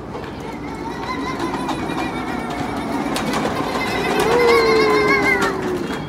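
Plastic wheels of a toddler's ride-on toy airplane rolling over a concrete walkway, growing louder as it comes closer. High pitched tones sound over the rolling, ending in one long held tone that falls slightly in pitch near the end.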